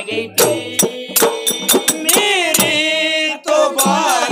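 Male voices singing a Moharam pada, a Muharram devotional folk song, over sharp strokes of a barrel drum. A long, wavering held note in the middle breaks off briefly near the end before the singing and drumming pick up again.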